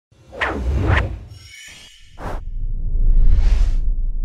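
Logo-intro sound effects: two quick whooshes with deep bass, a faint high shimmer, a short sharp swish, then a swelling whoosh over a low rumble that rings on.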